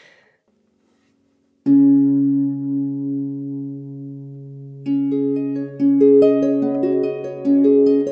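Celtic lever harp playing: low bass notes are plucked and left to ring about one and a half seconds in, then a melody of single plucked notes starts over them about five seconds in, the introduction to a traditional Gaelic song.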